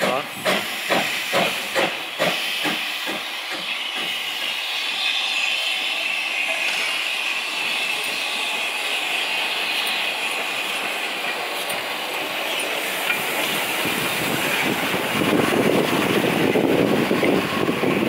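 Steam locomotive 761 coming to a stand: a few rhythmic beats, about two a second, die away in the first three seconds, then a steady hiss of escaping steam. A louder, lower rumble rises near the end.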